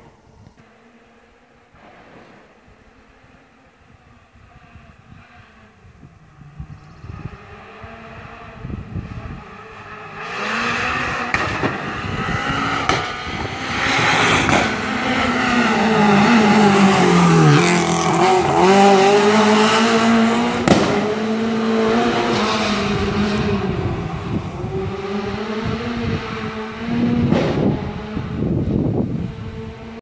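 Renault Clio R3 rally car's four-cylinder engine at high revs, approaching from far off and passing close by, its pitch rising and falling through gear changes with a deep dip in the middle. Several sharp, gunshot-like exhaust cracks ring out among the engine noise.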